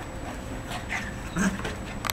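Two yellow Labrador puppies play-fighting, their paws scuffling on wooden decking, with a short puppy vocalisation about one and a half seconds in.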